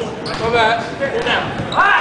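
Basketball bouncing on a hardwood gym floor, the knocks echoing in a large hall, with players' voices over it.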